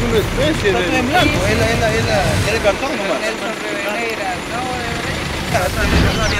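Unscripted voices of several men talking over one another, with a low rumble underneath that eases off around the middle.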